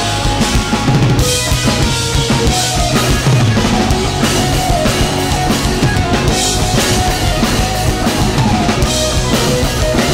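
Live rock band playing loudly: electric guitars, bass and a drum kit with bass drum and snare driving a steady beat.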